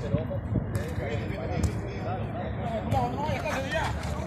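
Men's voices calling out across a football pitch during play, mixed with a few short dull knocks from the ball being kicked.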